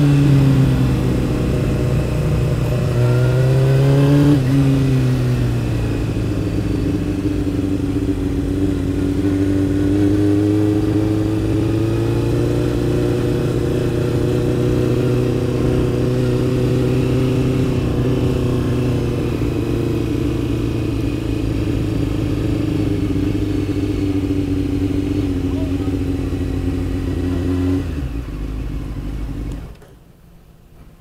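Motorcycle engine heard from the bike itself, its note falling as it slows, rising briefly about three seconds in, then running steadily at low revs as the bike rolls slowly. The engine cuts off just before the end.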